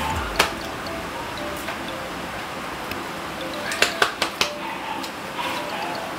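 Cutlery clinking against dishes: one sharp clink about half a second in, then a quick run of three or four around four seconds, over faint background music.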